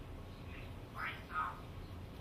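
Two short faint bird calls about a second apart, over a low steady hum.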